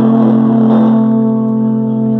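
Band electric guitars holding one chord and letting it ring out, the closing chord of the song.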